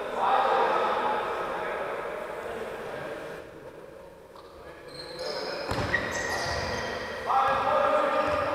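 Indoor football game in a large sports hall: players' shouts and calls echo around the hall, with shoes squeaking on the wooden floor and a sharp thud of the ball a little before six seconds in.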